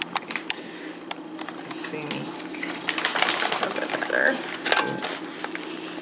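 Mountain House freeze-dried meal pouch being handled, crinkling with a scatter of small sharp clicks.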